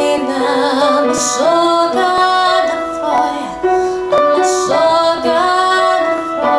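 A woman singing a Yiddish song, her held notes wavering with vibrato, while she accompanies herself on an upright piano.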